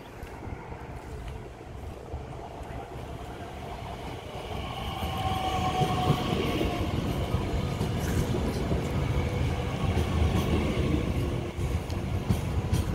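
DB Class 442 (Bombardier Talent 2) electric multiple unit pulling into the platform, growing louder about four seconds in as it draws up and passes close by. A low rumble of wheels on rail runs under a high electric whine from the traction equipment.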